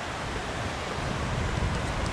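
Steady rush of a river and waterfalls, with an uneven low rumble of wind on the microphone.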